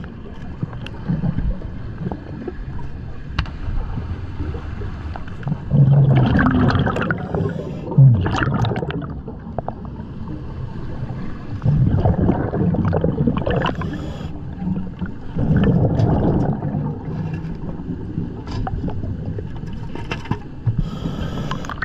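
Scuba diver breathing through a regulator, heard underwater: exhaled bubbles gurgle out in a burst every few seconds over a steady low rush of water.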